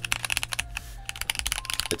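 Rapid typing on a Redragon K641 Pro Shaco, a 65% mechanical keyboard with an aluminum case and aluminum plate: a quick run of keystroke clacks. There is the slightest metallic ping from the aluminum build, not in your face.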